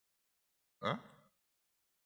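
A man's single short, rising "huh?" about a second in, amid near silence.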